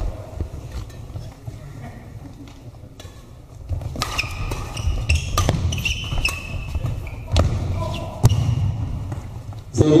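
Badminton rally: rackets striking the shuttlecock, about half a dozen sharp hits from about four seconds in, spaced roughly a second or less apart, over the low thud of players' feet on the court.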